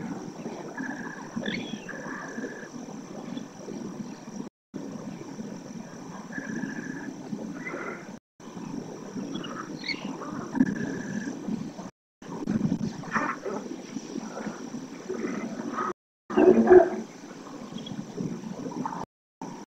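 Outdoor sound from a lagoon webcam's microphone: a steady low rumble with a few short whistled bird notes and chirps, and a loud animal call near the end. The sound drops out completely for a moment about every four seconds.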